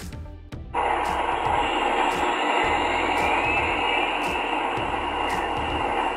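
Union Pacific gas turbine-electric locomotive's turbine running: a loud, steady roar with a faint whine that rises and falls in it, starting suddenly about a second in. This is the turbine noise that got these locomotives banned in some California cities.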